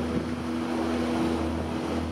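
Steady low rumble from a concert sound system, with a faint held note from the end of the music lingering underneath.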